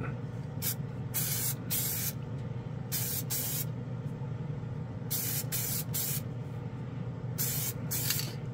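KBS Diamond Clear gloss aerosol spray can being sprayed in about eight short hissing bursts, mostly in pairs, over the steady low hum of the spray booth's fan.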